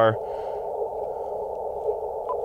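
Steady band noise from an Icom IC-705 transceiver's receiver, tuned to the 40-meter band in CW mode: a narrow, hollow hiss passed through the radio's CW filter.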